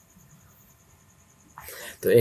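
Faint room tone, then near the end a short breathy noise from a person, the build-up of a sneeze or a sharp intake of breath.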